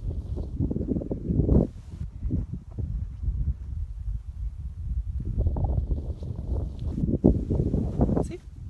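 Wind buffeting a phone's microphone in gusts, a low rumble that eases off in the middle and picks up again near the end.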